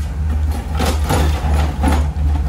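Ford E350 shuttle bus engine idling with a steady low hum. A few brief rustling noises come over it about a second in and again near the end.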